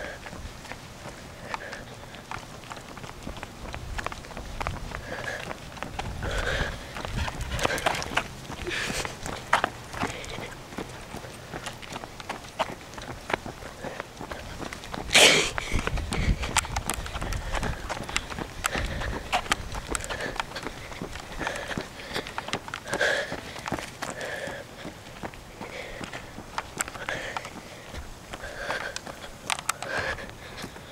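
Footsteps walking on a paved sidewalk, mixed with the rustle and clicks of a handheld camera on the move, and a single louder knock about halfway through.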